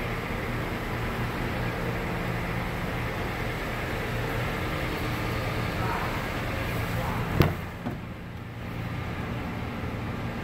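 Steady background hum, then about seven seconds in a single sharp click as the 2009 Honda CR-V's rear door latch is pulled open.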